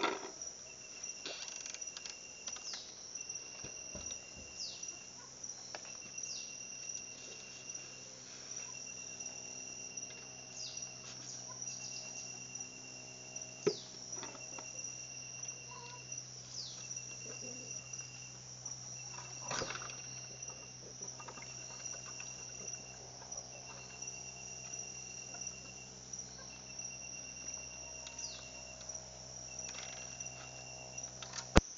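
Insects chirping: a steady high whine with a lower pulsed trill of about a second and a half, repeating roughly every two seconds. Occasional knocks and clicks sound over it, one sharp knock about halfway through.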